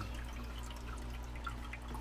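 Small resin tabletop terrarium waterfall running, water trickling and dripping into its basin in small irregular drops, over a low steady hum.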